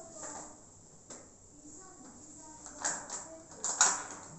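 Ice cubes clacking as they are dropped into a plastic bowl: one sharp clack about a second in, then louder clacks near the end.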